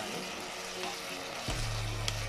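Grated potato and leek sizzling in a stainless steel pot as they are stirred with a spoon, with light scrapes and clicks of the spoon. A low steady hum sets in about one and a half seconds in.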